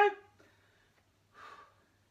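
The tail of a spoken word, then quiet apart from a single short, soft breath about a second and a half in, taken while starting a standing leg raise.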